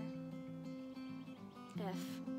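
Acoustic guitar fingerpicked with thumb and first finger, an A minor chord ringing under a steady run of plucked notes, moving to an F chord near the end.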